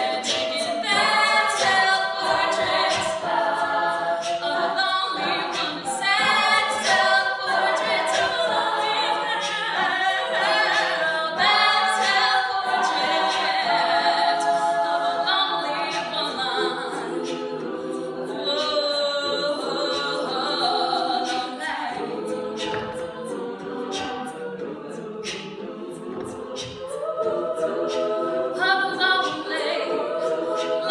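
Women's a cappella group singing: a lead voice with a microphone over sung backing harmonies from the rest of the group. The singing drops quieter for a few seconds past the middle, then the full group swells back in near the end.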